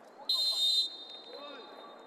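Referee's whistle: one short, shrill blast of about half a second, signalling that the penalty kick may be taken.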